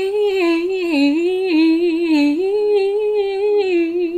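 A young woman singing one long unaccompanied phrase, a held vowel winding up and down in pitch in vocal runs with vibrato.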